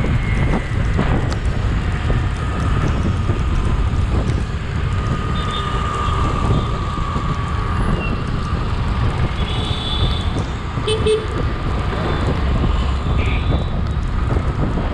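Wind buffeting the microphone on a motorcycle riding through city traffic, with engine and road noise underneath. A few short horn beeps come about eleven seconds in.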